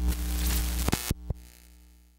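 Electronic intro sting: a low synth drone under a burst of static-like hiss, with a few sharp glitchy clicks about a second in, fading out near the end.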